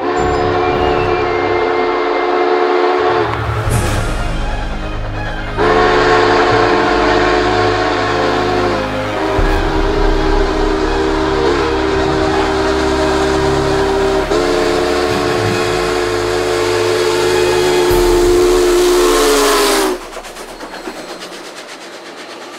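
Union Pacific 844 steam locomotive's chime whistle blowing long blasts as the train approaches, over the rumble of the running engine. The whistle's pitch sags as the engine passes and it stops about twenty seconds in, leaving the rumble of the passenger cars going by.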